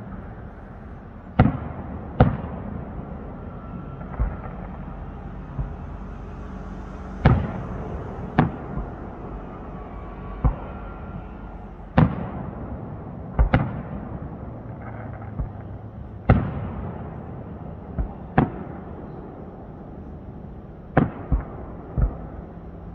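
Aerial firework shells bursting overhead, a sharp bang every second or two, some in quick pairs, each trailing off in an echo.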